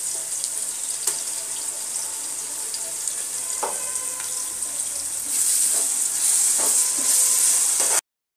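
Sliced onions frying in hot oil in a pressure cooker: a steady sizzle, stirred with a metal ladle that taps and scrapes the pot a few times. The sizzle grows louder about five seconds in, as a green paste is stirred into the onions.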